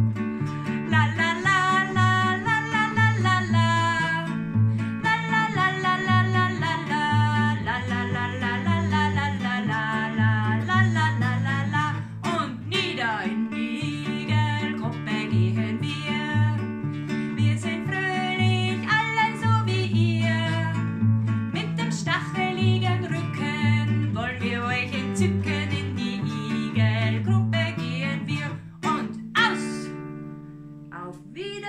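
A woman singing a children's song while strumming a nylon-string classical guitar, with alternating bass notes under her voice. The song ends with a last strum shortly before the end.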